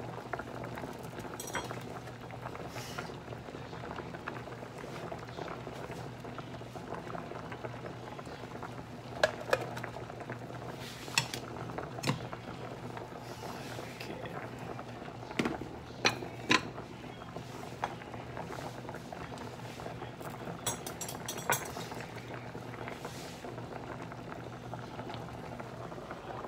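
A pot of mini potatoes at a rolling boil, bubbling steadily. A few sharp clinks of utensils and pans are scattered through the middle.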